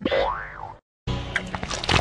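Pitch-lowered cartoon sound effects. A sliding boing-like tone rises and falls back over most of a second and then cuts out briefly. Busy cartoon music with clicks follows.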